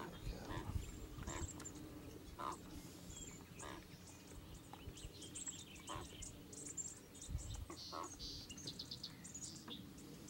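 Faint outdoor ambience: many short high-pitched chirps scattered throughout, with a few light knocks and handling sounds.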